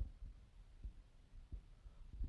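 Faint room tone with a low hum and two soft, low thumps less than a second apart.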